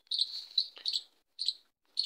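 A small bird chirping in the background: a run of short, high chirps, with brief quiet gaps between them.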